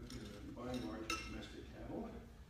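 A man talking, with a single sharp clink about a second in.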